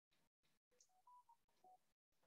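Near silence, with a few faint short beeps at different pitches a little under a second in.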